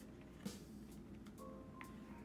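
Faint background music with a few held notes, under light clicks and rustles of plastic binder pockets being handled.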